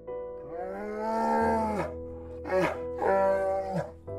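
Three drawn-out animal calls, each rising and then falling in pitch: a long one starting about half a second in, then a short one and a medium one near the end. They play over background music of steady held notes.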